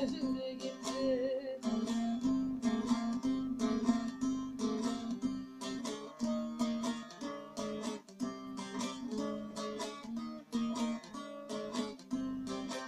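Bağlama (Turkish long-necked saz) played with a plectrum: a fast instrumental passage of quickly picked notes over a steady low drone. A held sung note with vibrato fades out in about the first second and a half.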